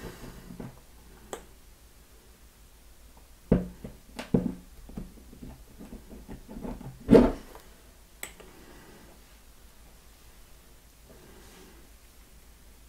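Hex screwdriver working a tiny screw into an aluminium RC crawler beadlock rim, with scattered small metallic clicks and taps, the loudest about seven seconds in. The screw is not catching its thread.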